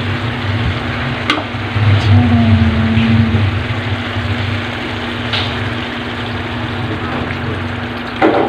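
Pork pieces sizzling as they fry in a wok, a steady frying hiss with a low hum beneath it. A few sharp clicks come at about one, two and five seconds in.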